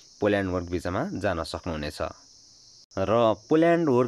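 A man talking in two phrases with a short pause between, over a steady high-pitched background noise.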